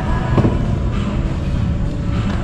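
Faint background music under a loud, steady low rumbling noise.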